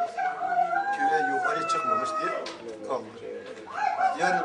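A person wailing in grief: one long, held, quavering cry that slowly falls, then a fresh cry rising near the end.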